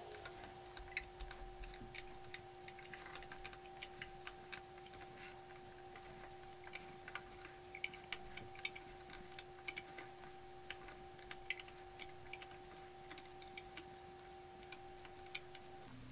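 Faint, irregular small clicks and ticks of a metal loom hook and rubber bands against the plastic pegs of a Rainbow Loom as the bands are lifted peg by peg, over a faint steady hum.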